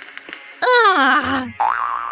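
Comic cartoon sound effects: a boing-like pitched glide that falls in pitch with a wobble, followed by a long whistling tone that rises and then slowly sinks, over a light music backing.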